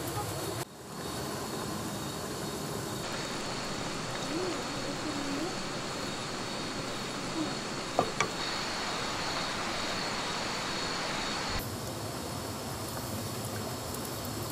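Steady sizzling hiss of pork slices grilling over a charcoal fire and of prawns cooking in a wok, with two sharp knocks of a wooden spatula against the wok about eight seconds in.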